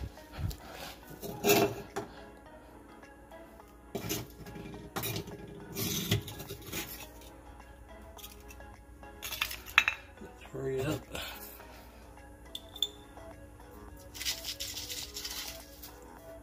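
Scattered knocks, clinks and scrapes as flat stone slabs and a plastic food dish are handled on the hard floor of a reptile enclosure, with one sharp knock a little past the middle and a short scraping rustle near the end.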